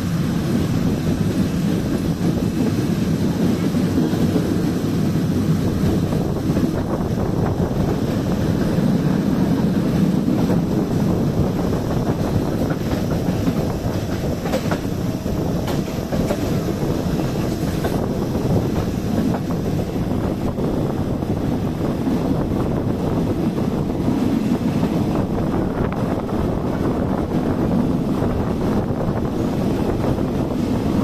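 Passenger train carriage running steadily along the track, heard from an open window: a continuous rumble of wheels on rail with rushing air, and a few sharp clicks partway through.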